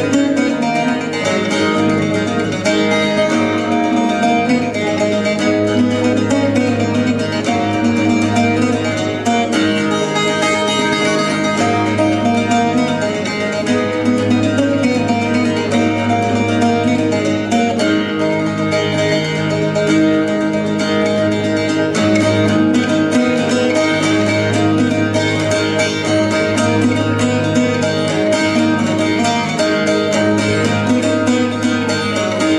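Cittern, a plucked string instrument of the guitar family, playing a tune in continuous picked notes.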